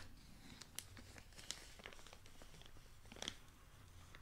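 Near silence: faint room hum with a few soft, scattered clicks and crackles, the clearest about three seconds in.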